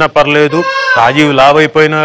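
A man talking animatedly, broken about half a second in by a brief high, wavering voiced sound.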